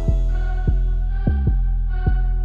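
Trap instrumental beat in a stripped-down passage without hi-hats or snare. A deep sustained 808 bass and kick hits that drop in pitch land about every half second under a held synth chord.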